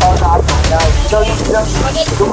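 Low, steady, evenly pulsing rumble of an idling motorcycle engine under a man's speech.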